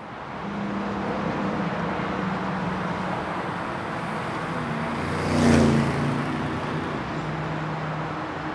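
Street traffic noise, steady, swelling as a vehicle passes about five and a half seconds in.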